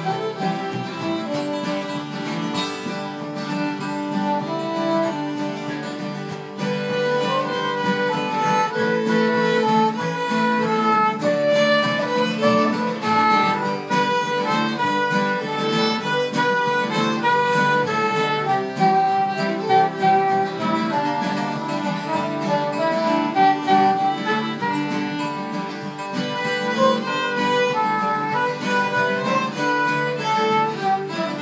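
Live acoustic country band playing an instrumental break: a fiddle carries the melody over strummed acoustic guitars and upright bass, with a soprano saxophone alongside.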